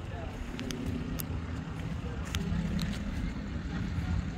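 Plymouth muscle car's V8 idling with a steady, low rumble, with voices in the background.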